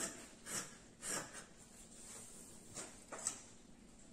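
Scissors cutting through two-thread cotton jersey knit fabric: a few faint snips with the soft rustle of cloth.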